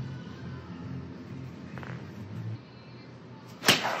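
A golf iron striking a ball off a driving-range mat: one sharp crack near the end.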